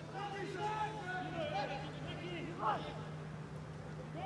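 Faint calls and shouts of voices on a football pitch during open play, over a steady low hum.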